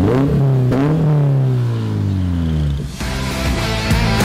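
Toyota GR86's naturally aspirated 2.4-litre flat-four revving through an aftermarket Fi Exhaust valved T304 stainless exhaust: two quick blips in the first second, then the revs fall away slowly over about two seconds. Music starts about three seconds in.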